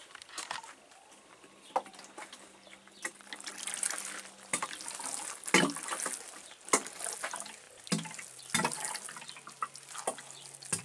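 Watering can sprinkling liquid through its rose onto seedlings in plastic cell trays: a hissing patter of drops on soil and plastic that builds up about three seconds in.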